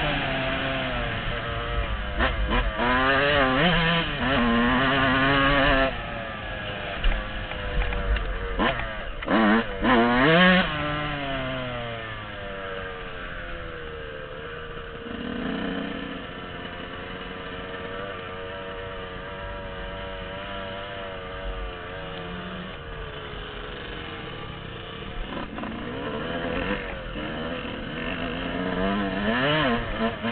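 Yamaha dirt bike engine revving up and down under the rider, with quick sharp throttle blips in the first half, then running lower and steadier on part throttle before picking up again near the end.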